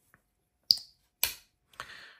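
Carbon-fibre-handled custom folding pocket knife being opened by hand: a sharp metallic click with a brief ring, a second click about half a second later, and fainter clicks near the end as the blade swings out and snaps open.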